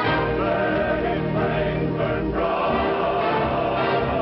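A choir singing a sustained passage of music.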